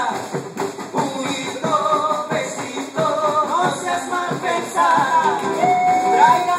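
Live band playing Latin American folk music: male voices singing a melody over strummed acoustic guitar, electric guitar and a steady beat on a bombo drum.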